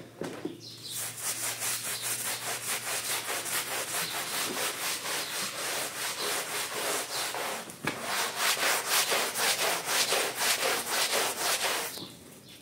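A hand scrub brush scrubbing a wet, soap-lathered rug back and forth, making rapid, even scratchy strokes at about four a second. The scrubbing starts about a second in, breaks off briefly near the two-thirds mark, and resumes louder.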